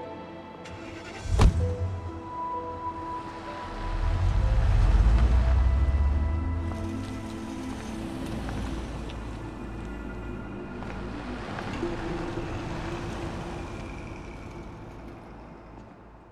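A car door shuts with one sharp thump about a second and a half in. Then a sedan's engine rumbles as the car pulls away and drives past, loudest around five seconds in and slowly fading, under background music.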